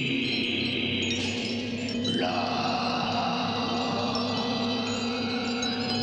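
Eerie horror-score texture: many held, shimmering chime-like tones over a steady low drone, the high cluster shifting about two seconds in.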